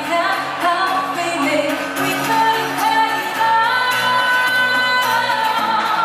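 A woman sings live into a microphone over acoustic guitar accompaniment, holding long notes in the middle of the phrase.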